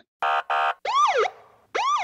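Police siren sound effect: two short steady electronic blips, then two rising-and-falling siren whoops.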